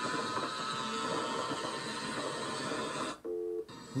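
Motorcycles running on the road, heard as a dense rush of engine and wind noise that cuts off abruptly about three seconds in, followed by a brief low pitched tone.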